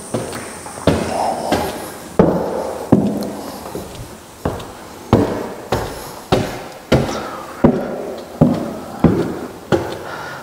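Footsteps climbing bare, unfinished wooden stair treads: a steady series of hollow knocks, about one every two-thirds of a second, each with a short ring.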